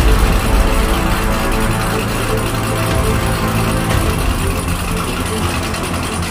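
A car engine running, with music playing over it; both come in suddenly and loudly at the start.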